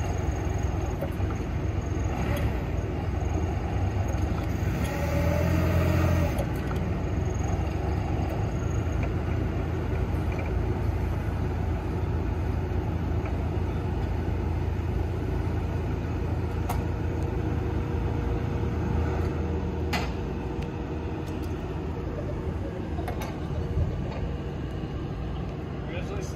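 The propane-fuelled engine of a Nissan 3,000 lb forklift runs steadily, rising briefly about five seconds in while the mast is being worked. There is a single sharp click about twenty seconds in.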